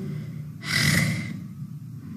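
A woman's single audible breath, about half a second in and lasting under a second.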